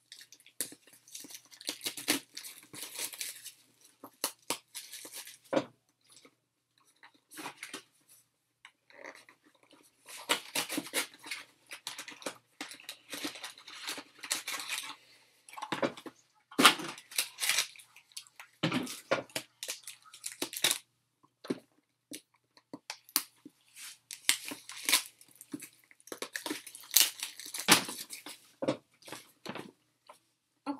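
Foil wrappers of Intrigue basketball card packs crinkling and tearing as packs are handled and opened, with cards shuffled in the hand. Irregular crackling in clusters, with a few sharper snaps.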